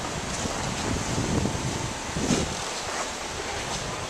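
Steady wind noise on the microphone, an even rushing hiss with no distinct events.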